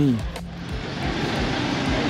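A camper van driving slowly past close by: a steady wash of engine and tyre noise that grows a little louder about a second in.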